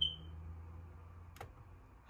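A short high beep right at the start, then a single computer mouse click about a second and a half in, over a faint low hum.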